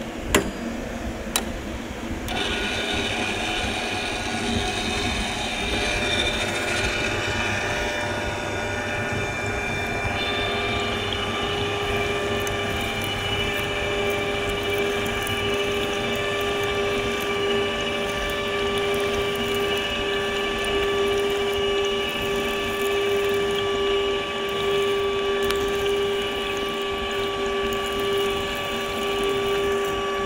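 Two sharp knocks, then about two seconds in a pipe threading machine starts and runs steadily with a constant hum. Its die head is cutting a thread on the end of a carbon steel pipe, flooded with cutting oil.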